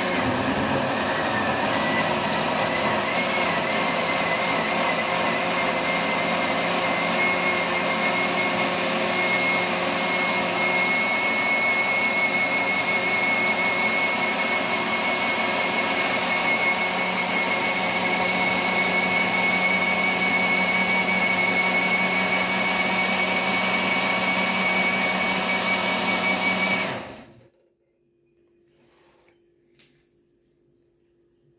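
Countertop blender motor running steadily, puréeing chopped leafy greens and liquid into a smooth green juice; its whine wavers in the first few seconds, then holds steady until the motor cuts off suddenly near the end.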